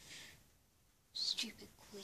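A young girl whispering a few breathy words, starting about a second in, after a short soft hiss at the start.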